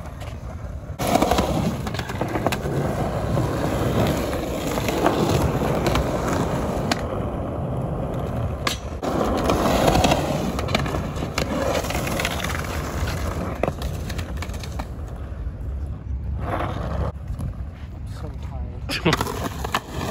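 Skateboard wheels rolling over a concrete skatepark bowl, a continuous rumble with occasional sharp clacks of the board, easing off near the end.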